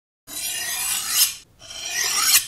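Two rasping scrape strokes in a logo intro sound effect. The first swells for about a second and stops sharply; the second starts about a second and a half in and is still building.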